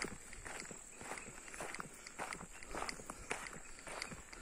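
Footsteps on a dirt and gravel road, a person walking with faint, irregular crunching steps about two a second.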